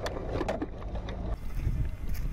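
An open military jeep driving over rough desert ground: a low, rough rumble with wind buffeting the microphone, and a couple of rattling knocks in the first half second.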